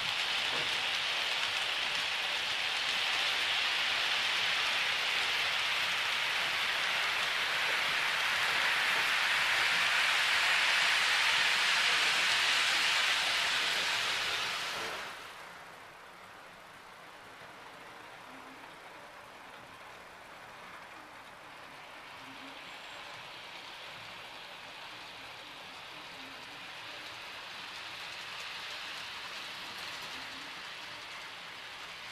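Model railway train running on the layout's track: a steady rain-like hiss of wheels rolling on the rails, loud for the first half, dropping suddenly about halfway through, then rising a little again near the end.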